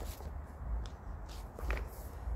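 Wind rumbling on an outdoor microphone, with light rustling and handling noises; a brief louder rustle comes about three quarters of the way in.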